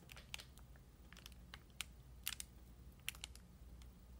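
Faint, irregular ticks and crackles of fingers handling a small strip of clear double-sided tape with its plastic backing film.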